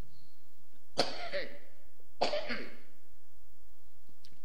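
A man coughs twice, a little over a second apart.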